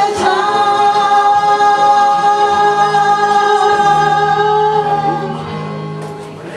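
Two women singing the closing held note of a gospel song, with the music behind them. The note is held for about five seconds, then fades out near the end.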